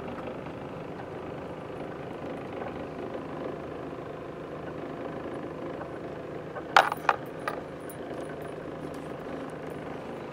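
Steady low hum of a car driving slowly, heard from inside the cabin. About seven seconds in come two sharp clicks close together, then a fainter one.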